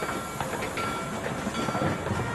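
Central Pacific Jupiter 4-4-0 steam locomotive running along the track, a steady hiss of escaping steam with a few faint chuffs.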